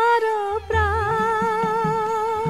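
A voice holds one long sustained note with vibrato, set in music from a Bengali musical drama, and a lower accompaniment joins about half a second in.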